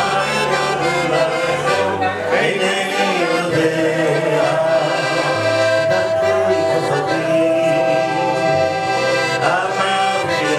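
Live band music: a piano accordion and an electronic keyboard, with a steady bass line, accompany a male singer on a handheld microphone.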